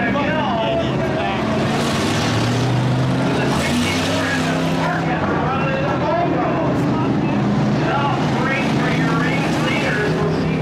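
Hobby stock race cars' engines running steadily as the field laps the dirt oval, with engine note rising and falling as cars pass.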